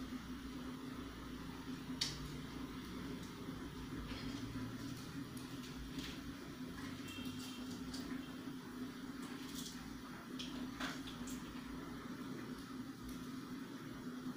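Scattered small clicks and light rustling from hands working in a steel bowl, the sharpest click about two seconds in, over a steady low hum.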